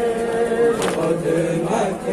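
A group of male voices chants a noha, a Shia lament, in unison through a microphone and PA. A single sharp slap, a beat of hands on chests (matam), comes a little under a second in.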